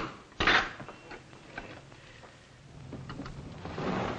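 A sharp knock at the very start, then a louder, short thud about half a second in, followed by a few faint taps.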